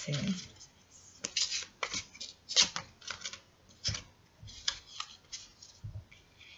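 A deck of angel oracle cards shuffled by hand: a string of short, irregular card swishes and snaps, ending with a soft tap as a card is laid on the table.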